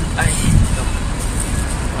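Steady city road traffic noise, a continuous low rumble of passing cars and buses.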